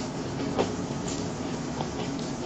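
Chewing and soft tearing of a sausage bun, with a few small crackly clicks from the bread and mouth, over a steady low hum.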